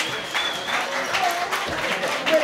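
A live audience applauding, with a few voices calling out over the clapping.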